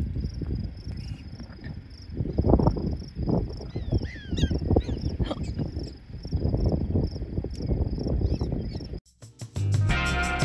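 Wind buffeting the microphone in gusts over a steady high insect trill, with a few short high chirps about four to five seconds in. About nine seconds in the sound cuts off and music with a beat begins.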